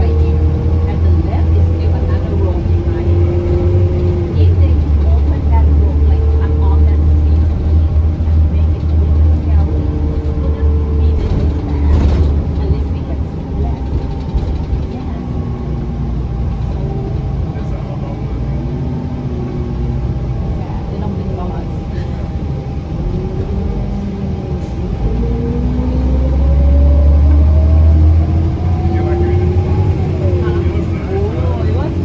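A 2007 New Flyer C40LF transit bus's Cummins C Gas natural-gas engine and drivetrain running under way, heard from inside the cabin. There is a deep rumble and a whine that rises and falls in pitch. It eases off in the middle and climbs again, louder, near the end as the bus picks up speed.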